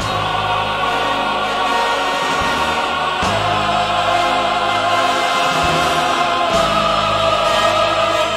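Full choir and orchestra singing loud sustained chords in the closing chorus of a musical's finale, with the bass shifting to a new chord every few seconds.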